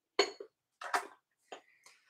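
Three or four light knocks and clinks of a green glass lidded candy dish being handled and set down, with short pauses between them.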